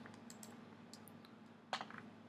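A few faint clicks from a computer's keys or buttons as web pages are navigated, with one sharper click near the end.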